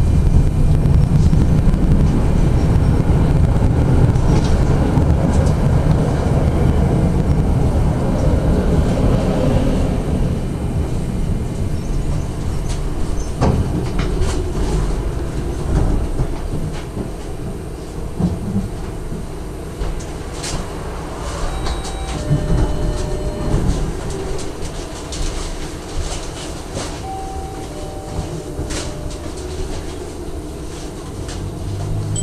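SGP E1 tram running on its rails, a loud low rumble with some wheel clatter that fades as it slows. It then stands at a stop, quieter, with scattered clicks and a few short beeps in the second half.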